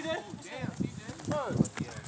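A basketball bouncing several times on a hard outdoor court, each bounce a short sharp knock, while players' voices carry in the background.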